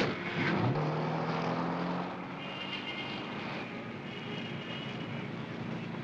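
A car door shuts with a sharp click, then a taxi's engine revs up, rising in pitch as the cab pulls away, and settles into steady running with road noise.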